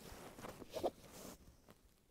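Faint rustling and a few light clicks from a prone shooter's clothing and hands on the rifle, then quiet for the last part.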